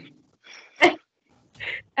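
A single short, sharp burst of a person's voice a little under a second in, with fainter brief breathy sounds before and after it.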